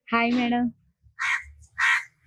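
A short voiced sound, then two short harsh calls about half a second apart near the end.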